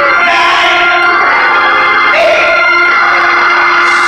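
Two-manual electric organ playing sustained chords while a man sings through a microphone over it, amplified in the church.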